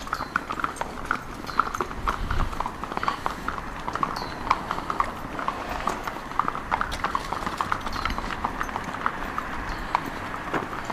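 Horse hooves clip-clopping on hard urban ground, a steady, irregular run of overlapping clops.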